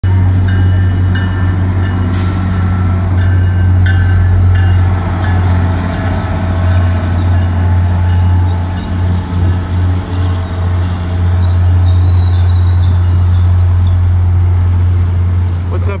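MBTA GP40MC diesel locomotive running as it moves its commuter train through the station, a loud, steady low engine drone. Its electronic bell rings in repeated strokes through the first few seconds, and there is a short sharp hiss about two seconds in.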